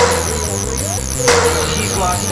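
Electronic tekno from a free-party mix, in a stretch with no kick drum: a steady low bass drone under rapid, repeating high falling chirps, with a noisy hit about every 1.3 seconds.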